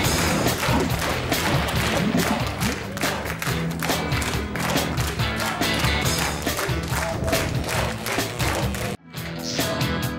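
Music with a steady beat plays throughout; it cuts out abruptly for a split second about nine seconds in, then starts again.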